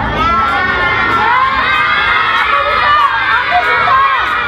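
A crowd of young children shouting and cheering together, many high voices overlapping at once.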